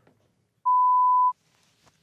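A single steady 1 kHz beep lasting about two-thirds of a second, starting about half a second in: an edited-in censor bleep, with the audio around it cut to near silence.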